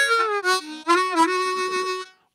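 Harmonica playing a short call-like phrase: a held note that steps down in pitch about half a second in, then a long lower note held until it fades.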